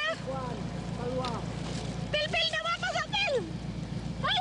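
Voices calling out in short, high-pitched phrases, over a steady low hum.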